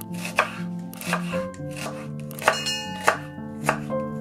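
A chef's knife slicing through an onion and striking a wooden cutting board, several sharp chops about every half second to a second, over background music.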